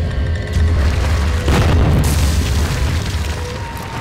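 Cinematic intro sound effect of a stone wall bursting apart: a deep rumble, then a heavy boom about a second and a half in, fading away afterwards.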